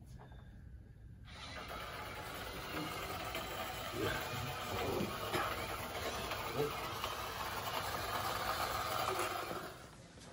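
Small wheeled robot rover's drive motors start up about a second in and run with a steady whir as it drives along a wall, cutting off near the end; a couple of brief exclamations over it.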